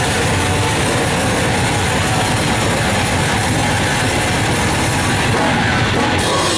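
Extreme metal band playing live at full volume: a dense, unbroken wall of distorted guitar and drums, the recording saturated and noisy.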